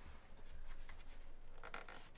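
Faint rubbing as hands grip and tilt the tablet's plastic back shell over a cloth desk mat, with a few light clicks near the end.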